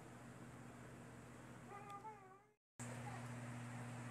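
Faint steady hum with a short, wavering, meow-like call about two seconds in, lasting under a second. The sound drops out briefly near the end.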